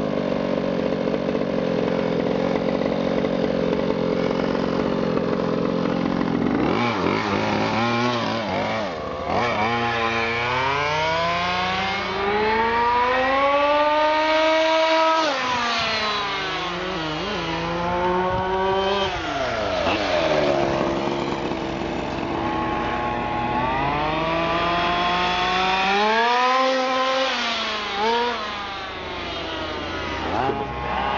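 Two-stroke petrol engine of a 1:5-scale FG RC Beetle. It idles steadily for about six seconds, then revs up and down again and again as the car accelerates and slows, its pitch rising and falling in long sweeps.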